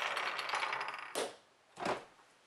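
Wooden chess pieces clattering and rattling as they tumble and scatter, dying away after about a second. Then come two short, sharp scuffing noises.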